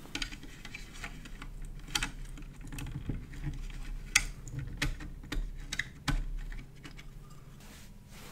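Irregular small clicks and taps of a plug-in circuit board being worked loose by hand and pulled out of its pin-header sockets.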